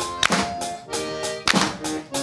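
Accordion playing an instrumental passage of sustained melody notes and chords, accompanied by a few sharp percussive hits.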